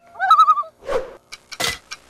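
Title-card sound effects: a short warbling high tone, then two quick whooshes with scattered clicks.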